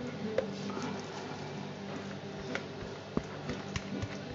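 A few sharp clicks and taps of a utensil against a bowl and mould as thick soap batter is worked, over a faint steady hum.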